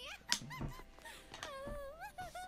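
A high-pitched voice whining and whimpering in several wavering, drawn-out sounds that bend up and down in pitch.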